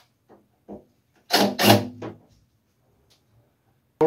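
A few short, sharp clacks of hand tools and hardware being handled at an electric water heater's element terminals: two faint ones, then a loud close pair about a second and a half in.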